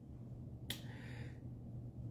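A man's sharp mouth click followed by a short, soft intake of breath lasting under a second, over a faint steady low hum.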